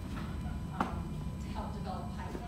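Faint, indistinct talking over a steady low room rumble, with one sharp knock a little under a second in.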